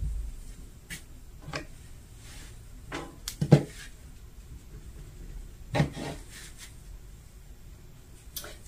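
Hands laying out and smoothing a polyester t-shirt on a flat board: fabric rubbing and rustling, broken by a few short thuds, the loudest about three and a half seconds in and again near six seconds.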